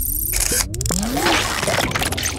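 Electronic logo-intro sound effects: a glitchy whooshing wash with several short pitch sweeps and sharp clicks.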